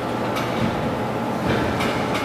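Steady background noise of a room, with a low hum and hiss, broken by a few short clicks about half a second in and near the end.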